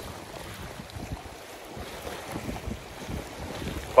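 Wind buffeting the microphone over the steady wash of small sea waves on shoreline rocks.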